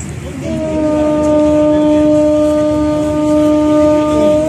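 A passenger ferry's horn sounding one long, steady blast that starts about half a second in.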